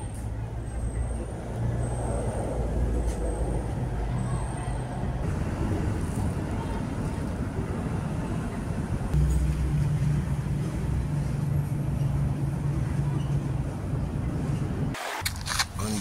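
Road traffic going by: a vehicle's engine hums low in the first few seconds, then a second, heavier engine hums from about the middle until near the end. Near the end the camera is handled, with a short clatter.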